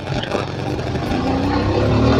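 Motorcycle engine running under way, its pitch climbing from about a second in as it accelerates.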